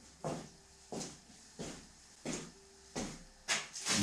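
Footsteps of a person walking on a hard workshop floor: six even steps, about one and a half a second.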